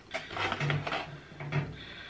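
Plastic tackle packaging being handled: a run of small clicks and rustles, densest in the first second.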